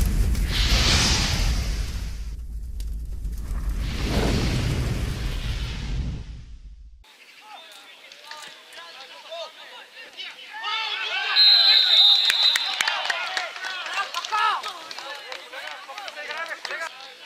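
Intro sound effects: two swelling whooshes over a deep booming rumble for the first six seconds, cut off suddenly. Then the sound of an outdoor football pitch: many distant shouting voices, with a steady referee's whistle blast of about a second and a half near the middle.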